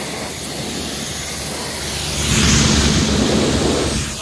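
Jet wash (pressure washer) spraying warm water onto a downhill mountain bike: a steady hiss of spray that gets louder, with a heavier rush, about two seconds in as the jet plays over the frame and drivetrain.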